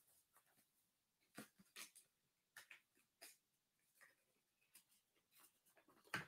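Near silence: room tone with a few faint, short clicks a little over a second in and again around two to three seconds in.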